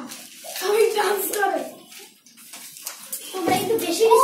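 Children's voices: boys talking and laughing over one another, with no clear words, in a small room.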